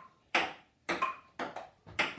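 Table tennis rally: the plastic ball is struck by paddles and bounces on the table, making sharp clicks about twice a second, several with a short ringing ping.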